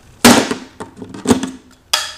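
Fiskars heavy-duty shears snapping through the thick hollow plastic handle of a juice jug in two cuts, two sharp cracks about a second apart, the first the louder.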